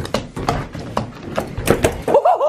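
Playing cards being passed and set down on a wooden tabletop in quick succession: a run of sharp, irregular taps, about four a second.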